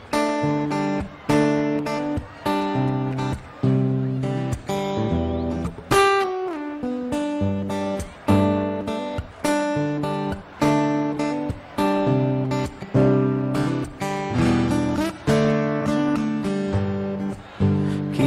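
Acoustic guitar strummed in a steady rhythm of chords, an instrumental song intro, with a note sliding down about six seconds in.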